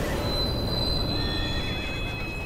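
Sound effects of a horse whinnying and a train's wheels squealing over a heavy low rumble, as a train strikes a horse-drawn carriage.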